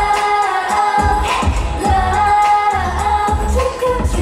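Live T-pop performance: a girl group's female voices singing over an amplified pop backing track with a heavy bass beat.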